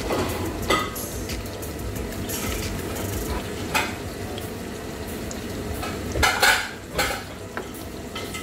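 Food sizzling steadily in pans on a stovetop, while a wooden spatula stirs a steel pot of pasta and knocks against it a few times, loudest near the end.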